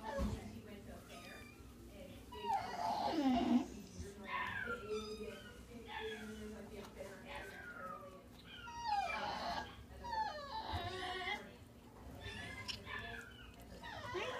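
Short, soft animal whimpers and whines, coming in several separate bouts and gliding down and up in pitch, with indistinct voices in the background.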